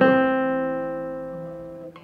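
Classical guitar: two notes plucked together, E on the fourth string and C on the second, ringing and fading steadily for about two seconds, then damped just before the end.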